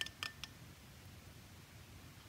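Three light clicks in the first half second, then faint room tone.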